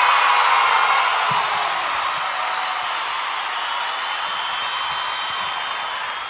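A steady wash of crowd cheering and applause with music under it, growing gradually quieter.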